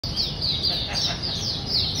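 Caged white-eye (mata puteh) singing a fast, unbroken run of high, falling chirps, about three or four a second, over a steady low background rumble.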